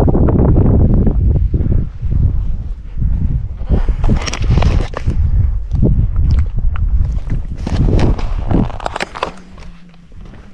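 Footsteps in loose sand under a loud, uneven rumble of wind on the camera microphone, easing off near the end.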